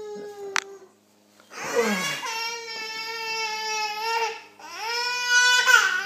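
A young child crying in two long, drawn-out wails. The first starts about one and a half seconds in, and the second rises and grows louder near the end.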